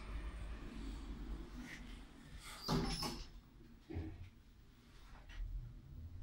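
Glass elevator car's sliding doors finishing closing, with a clunk about three seconds in and a softer knock a second later, over a low steady hum from the lift.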